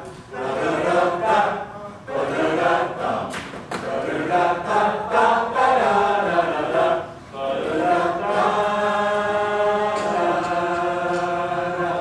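A group of voices singing a jazz tune together on scat syllables ('da-da-da'), in short phrases broken by brief gaps, then holding a long chord for the last few seconds.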